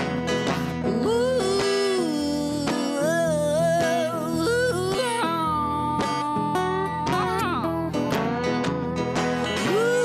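Country-blues instrumental break: a resonator guitar played lap-style with a slide carries the melody in notes that glide up into long held tones, over a second resonator guitar keeping the rhythm.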